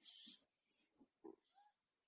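Near silence: a brief hiss at the very start, then a few faint small sounds, in a pause in the talk.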